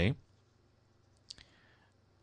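A single short, sharp click in a quiet pause, a little past the middle, over a faint steady low hum; a voice trails off just at the start.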